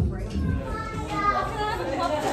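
Indistinct chatter of several voices in the background, some of them high-pitched, with no clear words.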